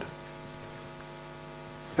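Steady electrical hum, a stack of several even tones holding unchanged.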